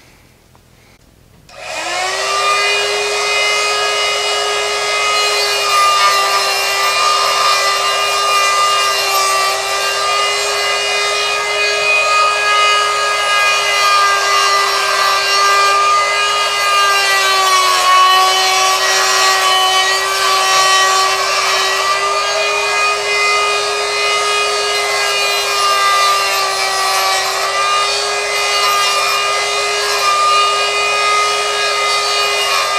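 A die grinder with a small abrasive wheel starts up about a second and a half in and runs with a steady high whine while grinding the tip of an S7 tool-steel chisel. Its pitch dips slightly now and then as the wheel is pressed into the steel.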